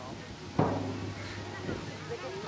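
A sharp thud about half a second in, followed by a low hum that lingers for about a second, then a fainter knock near the end, over distant voices.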